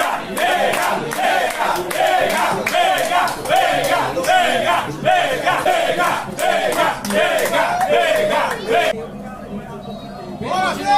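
A crowd of football supporters chanting in unison, loud rhythmic shouts at about two a second, breaking off about nine seconds in.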